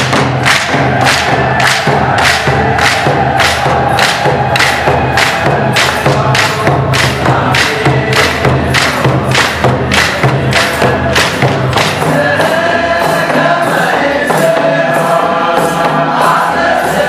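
Eritrean Orthodox hymn sung by a group of voices over an even percussion beat of about two to three strokes a second. The beat stops about three quarters of the way through, leaving the voices singing alone.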